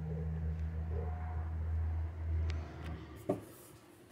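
Low engine rumble of a passing vehicle, growing louder and then fading away after about two and a half seconds, with a single short knock near the end.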